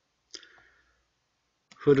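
A single short computer mouse click about a third of a second in, placing the cursor in text being edited, followed by a faint brief rustle; otherwise near silence until speech begins near the end.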